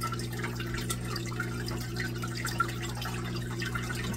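Aquarium filter running: water trickling and dripping into the tank over a steady low hum.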